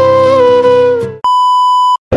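Background music with a held melody line, then a little over a second in it gives way to a steady electronic beep tone that lasts under a second and cuts off suddenly.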